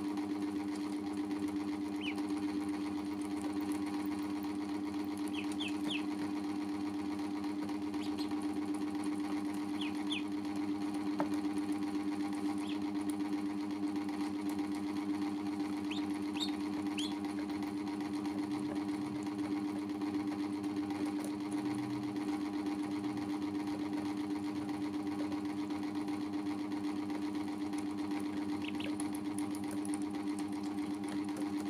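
A steady motor-like hum with one constant low pitch runs throughout. Over it come brief, high peeps from ducklings, a dozen or so scattered singly and in short runs of two or three.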